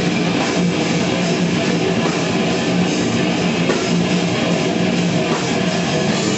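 A death metal band playing live: distorted electric guitar over a drum kit, loud and dense without a break.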